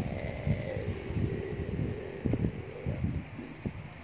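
Irregular low rustling and bumping close to the microphone, with a faint, muffled, falling hum from a child in the first half.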